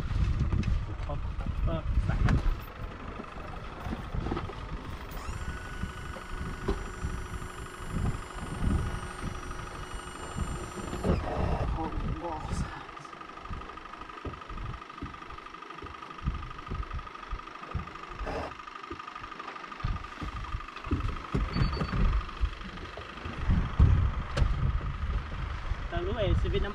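People talking over a steady high-pitched whine, joined from about five to eleven seconds in by a second, higher whine that starts and stops abruptly. Knocks and wind gusts on the microphone come through throughout.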